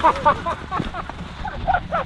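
A man laughing: a quick run of short 'ha' sounds in the second half, after a brief vocal exclamation at the start.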